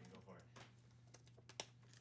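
Near silence: a low steady room hum with a few faint clicks of accordion keys and buttons being handled, the clearest about one and a half seconds in.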